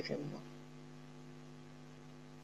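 Faint, steady electrical mains hum: a low drone holding a few fixed tones, with nothing else over it.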